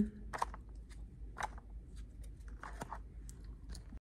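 Paper frog cutouts being handled and pressed onto a paper board: a handful of short, faint crackles and rustles, scattered unevenly.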